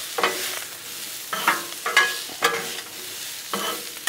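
A metal spatula scraping and clanking across the steel top of a Blackstone griddle, in irregular strokes, as it stirs sliced bell peppers and onions. Under the strokes the vegetables sizzle as they fry in oil.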